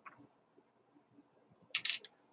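A brief plastic clatter near the end, from the parts of a cheap electric fly-swatter casing being handled and fitted together, with a faint tick near the start.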